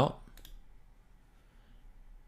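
A few quick computer mouse clicks about half a second in, closing a dialog, then quiet room tone.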